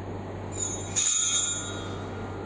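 Altar bells rung at the elevation of the chalice during the consecration at Mass: a high-pitched metallic ringing that starts about half a second in, grows louder at about a second, and dies away before the end.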